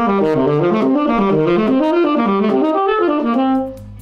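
Tenor saxophone playing a fast run of diatonic seventh-chord arpeggios in the key of C, going up one chord and down the next. The run ends on a held note about three seconds in, then stops.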